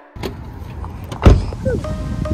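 Outdoor parking-lot noise with a steady low hum, broken a little over a second in by a single sharp thump, the loudest sound here, followed by a brief voice sound.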